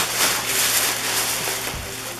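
A large plastic shopping bag rustling and crinkling as it is pulled over and lifted up, the rustle easing off toward the end.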